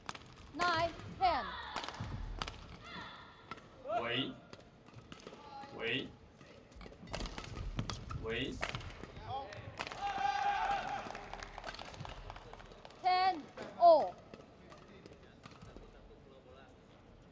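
Doubles badminton rally on an indoor court: racquets hit the shuttlecock in quick strokes among short high-pitched squeaks and shouts. The loudest shout comes near the end, as the point is won.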